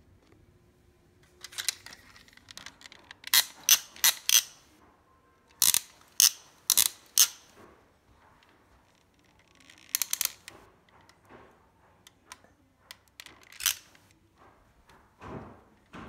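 Plastic toy robot-arm grabber clacking as its trigger is pulled and released and the claw snaps open and shut: sharp clacks in quick runs of about four, with a few scattered single clacks later.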